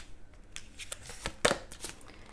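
A deck of cards being shuffled by hand: a run of soft, irregular clicks and snaps as the cards slide through the hands, the sharpest about one and a half seconds in.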